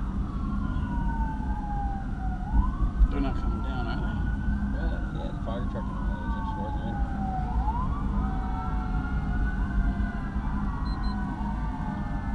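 Several police sirens wailing at once, each slowly falling in pitch and then sweeping quickly back up every few seconds, heard from inside a moving police cruiser over steady low road and engine rumble.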